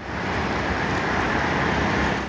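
Steady road traffic noise: cars and motorcycles passing on a city road.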